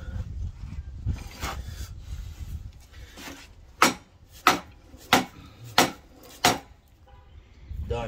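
Plastic-headed mallet driving a rubber trailing-arm bushing into a BMW E36 rear trailing arm: a few soft knocks as the bushing is set, then five sharp, evenly spaced blows about one and a half a second.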